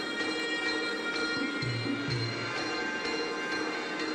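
Music with sustained ringing tones over a repeating bass beat.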